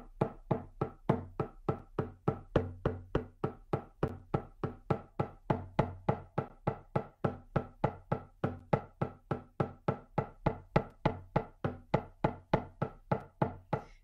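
A shamanic hand drum beaten in a steady, even rhythm of about three to four beats a second, each stroke with a short ringing tone. This is the monotonous drumbeat used to carry a guided shamanic journey.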